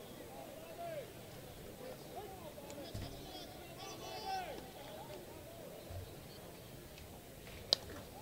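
Slow-pitch softball bat striking the ball: one sharp crack near the end, a solid hit that carries over the center-field wall for a home run. Distant crowd and player chatter underneath.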